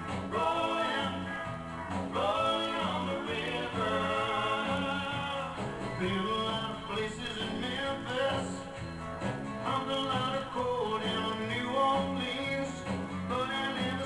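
Live country band playing with electric guitars, bass guitar and drums, while a male lead singer sings phrase after phrase over it.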